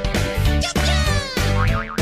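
Bouncy children's background music with a steady beat, overlaid with cartoon sound effects: a long falling glide in pitch about a second in and short wobbling glides near the end.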